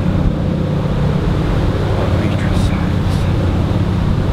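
A steady low hum with a rumble beneath it, unchanging throughout.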